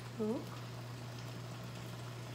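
A wide pan of peppers, herbs and water simmering faintly on a gas burner, a soft steady bubbling under a constant low hum.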